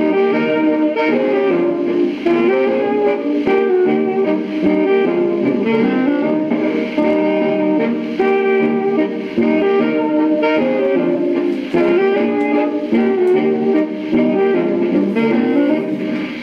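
An old-time dance band's waltz quadrille playing from a phonograph record on a turntable: a steady instrumental passage with no calling, in the narrow, top-less sound of an old recording.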